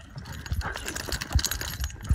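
Two dogs, a beagle and a wiry grey terrier-type dog, play-wrestling on concrete: a run of scuffling and clicking from paws and claws on the ground, with a few low thumps as they tumble.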